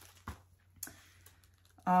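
Faint handling of paper and packaging as a printed pattern is lifted out of a box: two short light clicks, one near the start and one just under a second in, over soft rustling.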